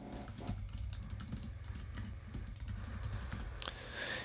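Typing on a computer keyboard: a quick, continuous run of light key clicks.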